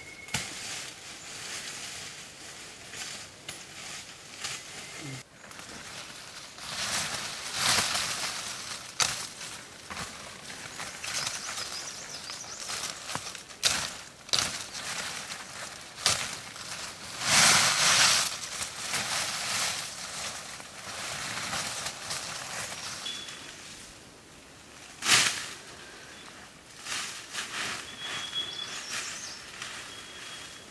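Leafy shrubs and dry leaf litter rustling and crackling as a person pushes through undergrowth and pulls and breaks leafy branches, with footsteps in the leaves. There are louder bursts of rustling about a quarter of the way in and just past halfway, and a single sharp crack toward the end.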